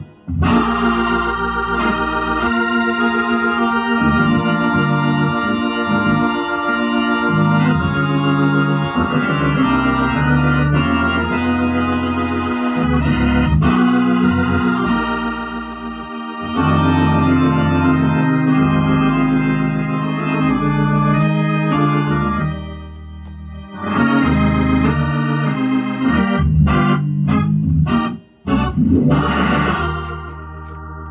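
Hammond organ playing a gospel song: full held chords over low bass notes, with two brief breaks in the last third.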